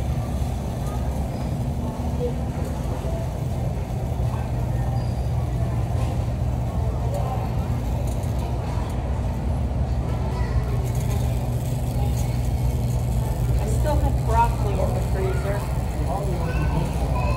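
Steady low rumble of manual-wheelchair and shopping-cart wheels rolling over a smooth concrete store floor, with a constant low hum beneath it.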